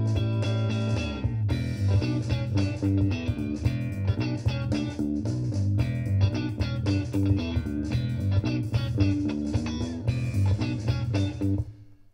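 Playback of a multitrack rock recording: electric bass played with a pick, over a drum track and electric guitar. The bass part has been pasted in and nudged by hand to sit on the beat. It starts abruptly and cuts off just before the end.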